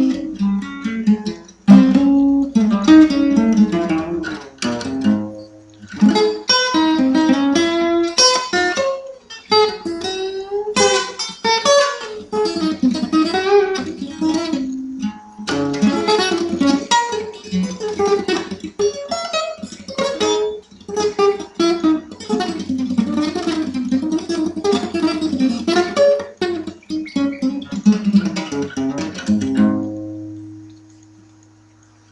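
Acoustic guitar played fingerstyle in an old-time blues style: picked bass notes, melody lines and chords in phrases with short breaks between them.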